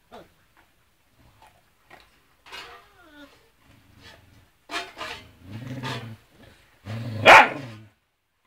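Dogs vocalizing: a short whine, then low growling in bursts, then one loud, sharp bark near the end.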